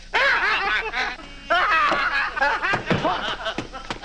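Men laughing uncontrollably in rapid, repeated bursts, with a short lull about a second in. It is the helpless laughter of laughing gas.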